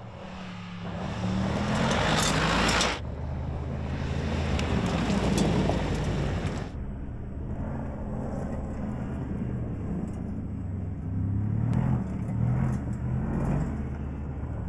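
Mercedes-AMG G 63's twin-turbo V8 engine running under load as the SUV drives over a dirt track. Near the start, tyres throw up gravel in a loud rushing spray. The engine note rises and falls with the revs, with the sound jumping at cuts in the footage.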